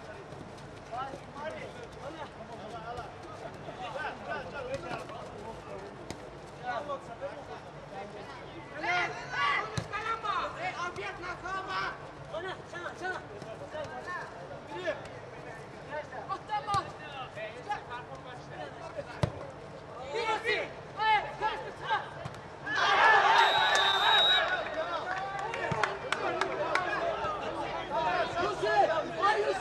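Footballers shouting and calling to each other during play. Near the end comes a short whistle amid a burst of louder shouting.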